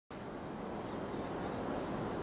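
A cloth rubbing over the surface of a framed oil painting, wiping on a thin film of oil to 'oil out' the paint. The steady rubbing goes on without a break.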